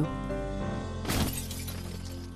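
A CRT television tipping off a dresser and crashing to the floor, with a shattering burst about a second in that dies away quickly, over soft background music.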